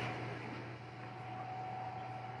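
Quiet room tone in a pause between spoken sentences: a faint, steady low hum with a thin high tone and hiss.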